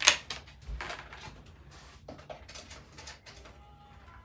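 Handling noise from a DVD disc and its plastic case: a sharp click at the start, then scattered soft clicks and knocks, with a faint steady tone near the end.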